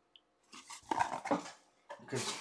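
A few short knocks and rustles of a cardboard trading-card box and foil packs being handled on a tabletop, starting about half a second in and lasting about a second.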